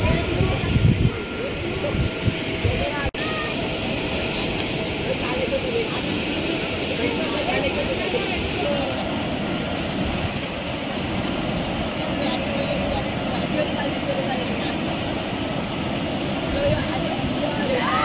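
Steady outdoor rumble and hiss with faint, indistinct voices mixed in.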